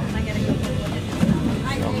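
A man talking over background music, with the steady low rumble of a moving passenger train underneath.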